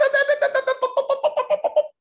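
A person's high-pitched voice in a rapid run of short staccato syllables, about ten a second at a nearly steady pitch, like a giggle or a comic vocal sound effect.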